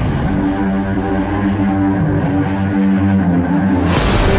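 Background music with sustained pitched tones, muffled with the treble cut off, then opening back up to full brightness suddenly at the very end.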